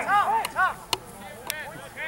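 Players shouting short calls across a rugby field, loudest in the first half second and then dying down, with a few sharp clicks.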